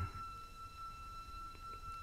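A pause in a spoken recitation played from a vinyl record: a faint, steady high tone with fainter overtones holds over low background hiss.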